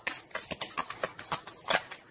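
Tarot cards being shuffled by hand: an irregular run of short card taps and slaps, one louder slap near the end.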